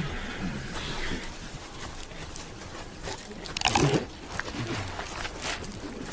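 Ape-like grunts and rustling from a group of early hominins, with one loud, short cry about three and a half seconds in.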